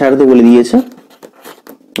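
A voice speaking Bengali, with a drawn-out word that trails off in under a second, followed by a quieter pause with faint scratching of a marker writing on a whiteboard.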